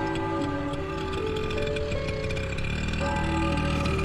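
Background film score: sustained held notes that shift in pitch every second or so over a steady low drone.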